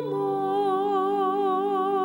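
A woman cantor singing the responsorial psalm, holding one long note with a slow, regular vibrato over a steady low sustained chord.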